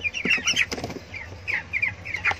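A flock of three-week-old white broiler chicks peeping: many short, high chirps overlapping all the time, with a few brief clicks about half a second in.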